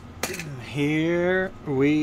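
A voice making two drawn-out vocal sounds with no clear words, the first about a second in and the second near the end. A single sharp click comes just before the first.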